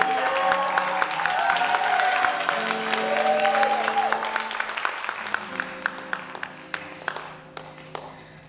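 Audience applause, thinning out and dying away over the last three seconds, over held low instrumental notes.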